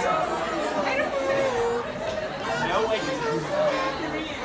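Indistinct chatter of many people talking at once in a large indoor room, overlapping voices with no single speaker clear.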